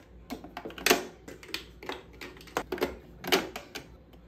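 Plastic makeup bottles and tubes being set down into a clear acrylic organizer, clicking and tapping against it in an uneven string of sharp taps, the loudest about a second in and again past three seconds.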